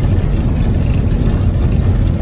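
Steady low rumble of a moving vehicle, heard from on board.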